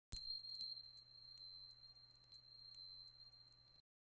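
High, steady ringing chime tone with a few light tinkling strikes over it, the brightest about half a second in; it dies away just before the end.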